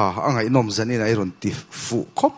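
A man speaking in a low voice, then a short breathy hiss near the end.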